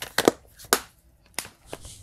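A plastic multi-disc DVD case being handled: a quick run of sharp clicks and rustles in the first second, then one more click about a second and a half in.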